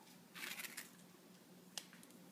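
Hands handling flower stems and greenery: a brief crackly rustle about half a second in, then a single sharp click near the end, over a faint low hum.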